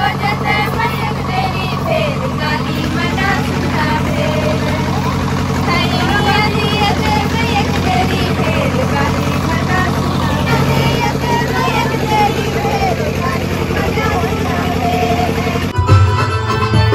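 A group of women singing together as they circle in a dance, over a steady low engine hum from a generator.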